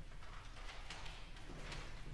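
Audience starting to applaud at the end of a piece: scattered hand claps that begin suddenly and quickly thicken into steady clapping.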